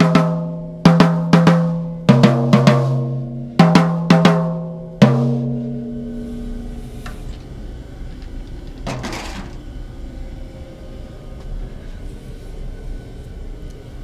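A vintage Rogers 12-inch tom (1959 Spotlight series) and 14-inch floor tom (1962 Holiday series), tuned to jazz pitch, struck with a drumstick about eight times over five seconds. Hits switch between the higher small tom and the lower floor tom, and each note rings on with a long sustain. The ringing fades out by about six seconds in, and a brief noise follows about nine seconds in.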